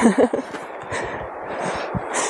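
A word trailing off, then close breathy exhalations from a hiker pausing mid-sentence on an uphill walk.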